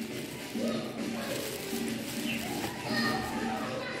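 Faint background chatter of children's voices in the room, softer than close speech.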